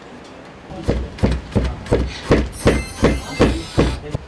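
Weaver's hand-held beater comb striking down on the weft of a kilim on an upright loom to pack the weft threads tight. It makes a steady run of about a dozen sharp knocks, about three a second, starting about a second in.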